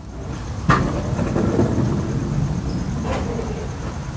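Pro scooter wheels rolling on concrete with a low rumble, with a sharp knock about a second in and a softer one near the end.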